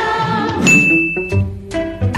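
Background music with a single bright, high ding starting about half a second in and held for well under a second before the music goes on: an edited-in chime sound effect.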